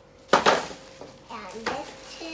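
A loud clatter of flat dollhouse board panels knocking together, a brief burst about a third of a second in that dies away within half a second. A child's voice makes short sounds near the end.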